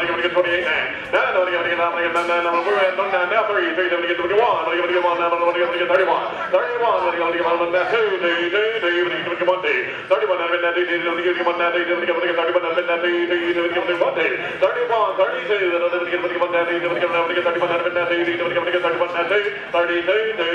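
An auctioneer's rapid bid-calling chant, a man's voice run on almost without a break and held on a near-steady pitch, dipping briefly between phrases.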